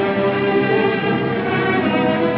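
Orchestral background music, with strings holding sustained notes.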